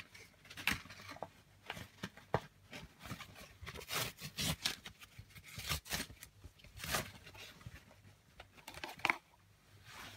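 Irregular crinkles and sharp clicks of card and plastic packaging being handled, with the loudest snaps about four and seven seconds in.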